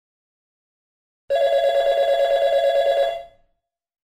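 A telephone ringing: one quickly pulsing ring, about two seconds long, that starts a little over a second in and fades away.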